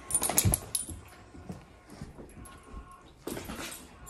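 Great Danes getting up and moving about: a flurry of clicks and rattles in the first second, a short faint high whine about two and a half seconds in, and a brief rustle of movement near the end.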